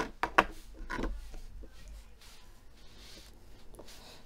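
Hands handling tarot cards and small objects on a wooden tabletop: a few sharp taps and clacks in the first second or so, then quieter handling noise.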